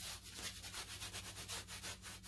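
Bristle paintbrush scrubbing back and forth on a stretched canvas in quick, short, scratchy strokes, roughly five a second.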